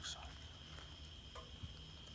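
Night insects, crickets, trilling steadily and faintly at a high pitch, with a faint short tap about one and a half seconds in.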